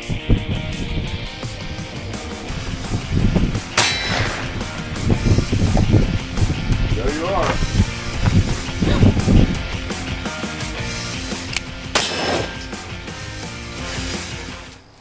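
Two pistol shots about eight seconds apart, each a sharp crack, over background music. They are shots at a splitting wedge meant to split the bullet onto two clay pigeons, the second one fired on the draw.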